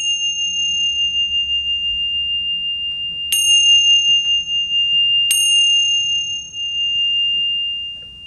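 A pair of tingsha cymbals rung by striking them together: a clash right at the start, then two more about three and five seconds in. Each clash leaves a long, steady, high ring that carries on after it.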